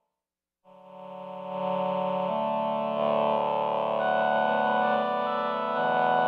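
Behringer VC340 vocoder synthesizer playing slow held chords on its human voice section blended with its other sections. The sound starts after a moment of silence, swells in over about a second and sustains, changing chord a few times.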